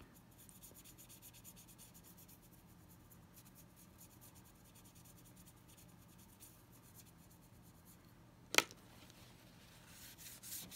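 A paintbrush stroking thinned acrylic paint onto a sculpted broom handle, heard as faint, rapid, scratchy brushing. A single sharp click comes about eight and a half seconds in.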